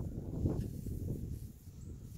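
A man taking a drink from a plastic cup: low gulping and swallowing sounds, loudest in the first second.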